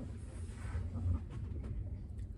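Low rumble and rubbing handling noise from a hand-held phone camera being swung around while walking.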